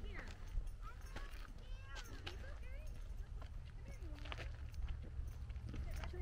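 Footsteps on a stony dirt trail: scattered scuffs and clicks of shoes on loose rock and gravel, over a steady low rumble.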